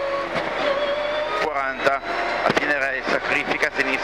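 Mitsubishi Lancer N4 rally car's turbocharged four-cylinder engine heard from inside the cabin, pulling hard under acceleration with its pitch rising.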